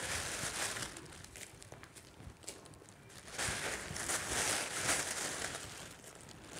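Thin plastic bag crinkling and rustling as it is handled, in two bouts: one at the start and another from about halfway through, with a quieter spell between.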